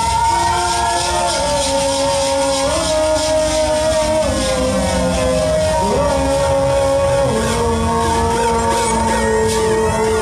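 Live band music with no singing: several held notes that step slowly from pitch to pitch, sliding tones above them, and a low drum rumble underneath.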